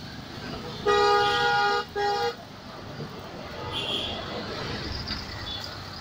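A vehicle horn sounds twice over street traffic noise: a long blast of about a second, then a short one.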